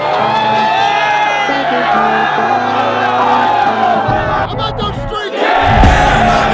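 A crowd of many voices singing together over a music track with a steady bass line; the voices break off briefly and come back loudest near the end.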